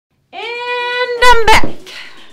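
A woman's long, drawn-out exclamation ending in "back!": held at one steady pitch for about a second, then louder with a wavering pitch before breaking off.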